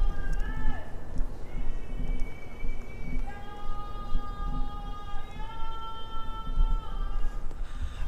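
A man screaming in the distance: long, high, held cries. There is a short one near the start, another about a second and a half in, then one lasting about four seconds that steps up in pitch halfway through.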